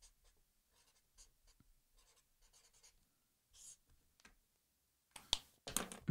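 Pen writing on a sticky note: faint, quick scratching strokes, with a few louder sharp strokes near the end.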